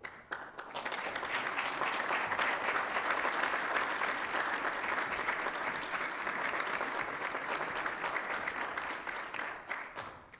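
Audience applauding: the clapping builds up in the first second, holds steady, then dies away at the very end.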